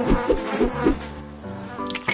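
A fly buzzing close by, its pitch wavering up and down, over light background music; the buzz stops about a second in.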